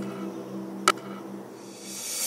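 Background music dying away on held notes, with one sharp click about a second in. Near the end a hiss rises as hot water is poured from a mug onto rice flour in a steel bowl.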